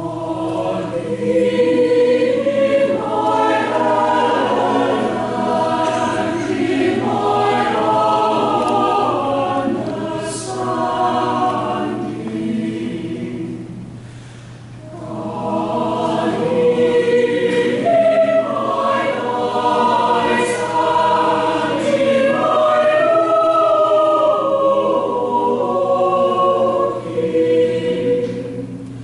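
A choir singing, in two long phrases with a short pause about halfway through.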